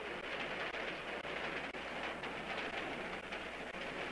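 Faint steady hiss with light crackles and a low hum: background noise of an old film soundtrack.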